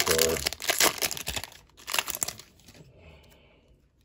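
Foil wrapper of a trading-card pack crinkling as it is peeled back and pulled off the stack of cards, a run of crackly rustling that fades out after about two seconds.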